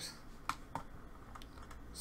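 A few light clicks of computer keys, the clearest two about a quarter second apart in the first half.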